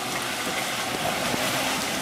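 Toyota FJ Cruiser's engine running steadily while the truck sits hood-deep in muddy water, with the water churning and sloshing around it.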